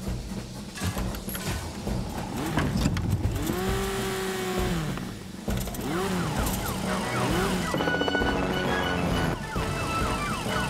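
Cartoon emergency siren, rising and falling in slow wails and then switching to quick repeated rising yelps, over background music.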